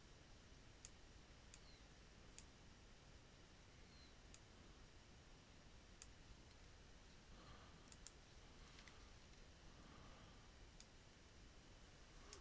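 Near silence with faint, scattered computer mouse clicks, about nine of them, spread irregularly.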